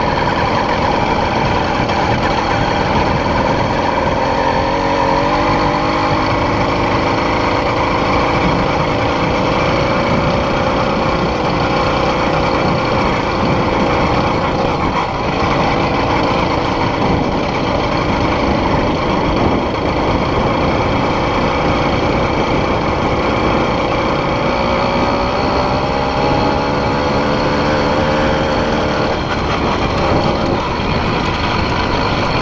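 80cc two-stroke motorized-bicycle kit engine running while the bike is ridden, its pitch rising and falling as the throttle is opened and eased off.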